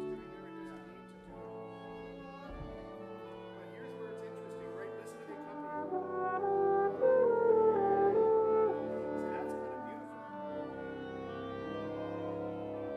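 A wind ensemble playing sustained, slow-moving chords, with horns and other brass prominent. It swells to its loudest about seven to nine seconds in, then eases back.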